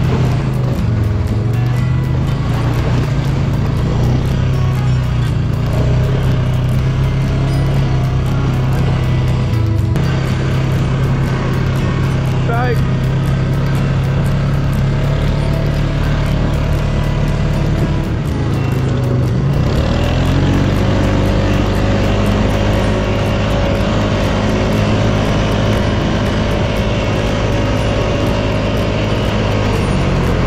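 ATV engine running steadily under way; a little under two-thirds of the way in its note rises and holds higher as the machine speeds up.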